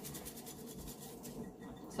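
Paper towel rubbed quickly back and forth on a glass wine bottle, scrubbing off label residue: soft scratchy strokes at about ten a second, thinning out near the end.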